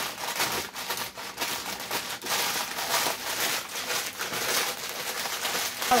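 Vanilla wafer cookies being crushed by hand inside a plastic bag: an irregular run of plastic crinkling and crunching cookie.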